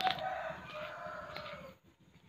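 A rooster crowing: one long call that ends about a second and a half in.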